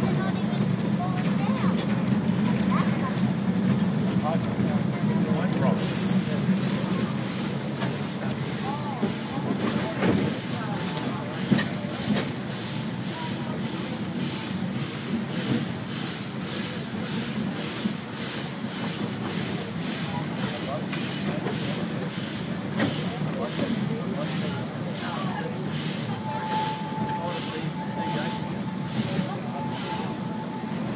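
Narrow-gauge train carriage running along the track, with a steady low rumble and, from about six seconds in, a regular beat of hissy pulses roughly once a second. A steady high whine comes in near the end, and passengers' voices are faint underneath.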